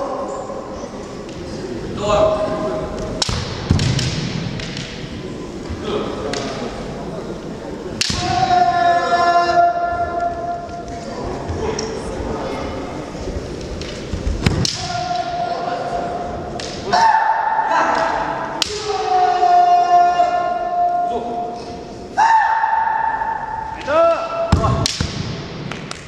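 Kendo sparring: bamboo shinai swords clacking and striking armour, with stamping footwork on a wooden floor. The fighters give several long, drawn-out kiai shouts.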